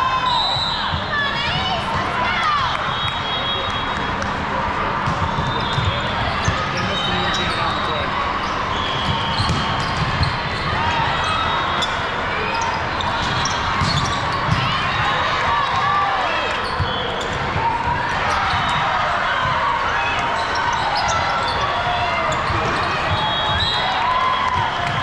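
Crowded volleyball hall: a steady din of many voices and player calls, with sharp smacks of volleyballs being hit and bounced on the courts, the loudest a few times through.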